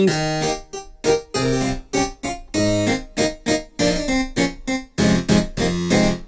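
A sampled Flemish harpsichord (VCSL sample library) playing a run of plucked notes and chords, each with a sharp attack and a quick decay.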